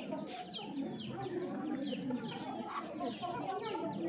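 Chickens clucking, with short, high, falling peeps repeating several times a second throughout.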